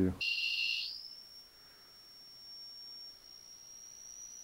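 Electronic alarm tone from a detection device: a short loud high beep of several pitches, then a thin high whine that holds faint and steady and creeps slightly up in pitch.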